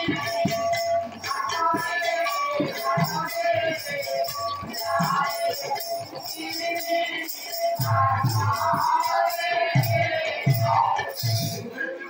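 Live Odia pala music: small hand cymbals jingling in a steady even rhythm, joined by deep drum strokes in the second half.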